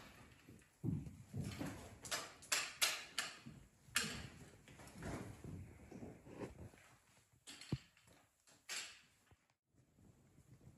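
Footsteps scrambling over loose limestone rubble in a mine: irregular crunches and clatters of shifting rock, about a dozen in all, stopping shortly before the end.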